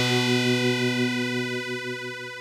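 Music ending: a final held chord rings on after the rest of the track stops, slowly fading out.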